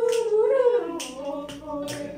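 A voice singing or humming a drawn-out, wavering tune that drops lower a little under a second in, with a sharp click or snap about once a second.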